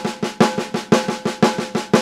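Snare drum played with sticks in an even, steady stream of triplet strokes, about seven a second, each stroke ringing briefly.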